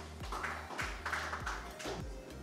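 Faint background music with a steady beat of about two drum hits a second.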